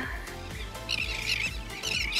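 Background music, joined about halfway in by a flock of seabirds calling overhead: a dense, high chatter of chirps.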